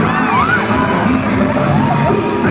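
Live band music played loud through a concert PA, heard from within the crowd, with audience shouts rising over it early on.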